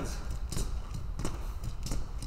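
Sneakered feet landing on the floor in a quick, even rhythm of short knocks, one with each jump of scissor-style jumping jacks as the legs switch front and back.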